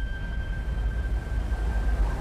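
A steady low rumble, with a thin high tone held over it that fades out near the end.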